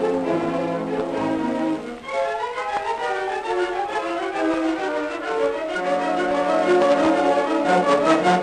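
Music played back from a 1930 Victor 33 rpm demonstration record on a turntable, with several instruments sounding together. The low notes drop out about two seconds in and come back at about six seconds.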